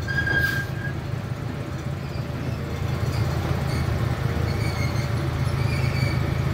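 Chance C.P. Huntington miniature train running slowly, its engine a steady low hum under the rolling coaches, with a brief high squeal near the start.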